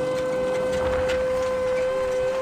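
Traditional folk music on a flute-like wind instrument holding one long steady note. A lower second note joins near the end.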